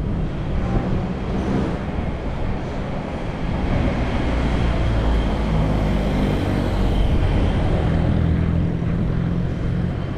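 Street traffic noise: a steady rumble of motor vehicle engines running on the road, with an engine hum coming up about a third of the way in and again near the end.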